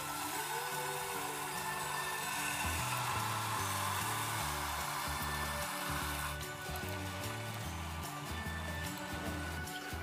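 Pua batter sizzling as it is ladled into hot oil in a small steel kadhai, a steady hiss that eases after about six seconds, with soft background music.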